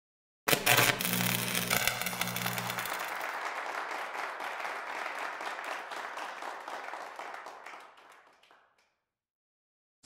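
Audience applause that dies away gradually over several seconds, with a short low musical tone at its start.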